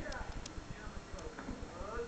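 A person's voice, its pitch sweeping down early on and rising again near the end, over low rumbling thumps.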